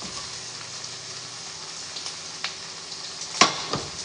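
Turkey bacon sizzling in a frying pan, a steady hiss with a few light clicks. A sharp knock near the end is the loudest sound.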